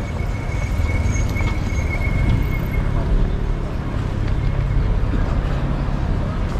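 Outdoor street ambience picked up by a walking camera: a steady low rumble on the microphone with footsteps on paving. A thin, high steady tone is heard for roughly the first half.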